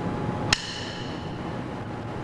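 A single sharp knock about half a second in, with a short metallic ring after it, over a low background hush.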